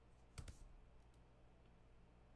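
Two quick computer keyboard keystrokes a little under half a second in, otherwise near silence with a faint low hum.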